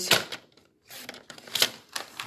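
Paper trimmer's blade carriage sliding along its rail and cutting a sheet of patterned paper, heard as a few sharp clicks and scrapes, the loudest about one and a half seconds in.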